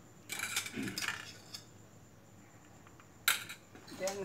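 A metal spoon clinking and scraping against stainless steel bowls: a cluster of clinks and scrapes in the first second, then a single sharp clink a little after three seconds in.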